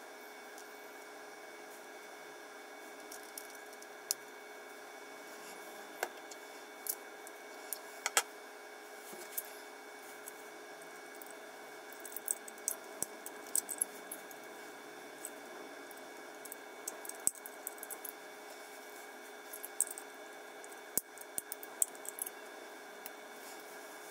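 Small, irregular clicks and ticks of hard 3D-printed plastic parts being handled and fitted together, and a utility knife cutting print supports from a plastic part, over a steady background hum.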